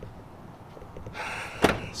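A pickup truck door slammed shut once, about a second and a half in, just after a short rustle.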